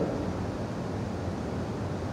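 A pause in speech filled with steady background noise: an even hiss with a low hum underneath, the room tone of the hall picked up by the microphone.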